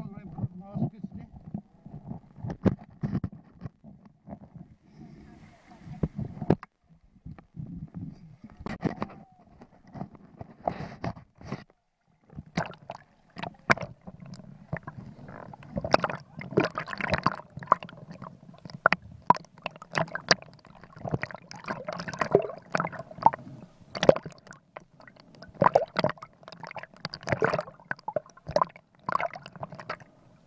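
Water sloshing and gurgling around a camera as it goes under the surface, heard muffled through the housing, with many irregular sharp clicks and knocks that grow busier in the second half.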